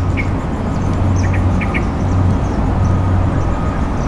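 Outdoor background: a steady low rumble, with short bird chirps several times.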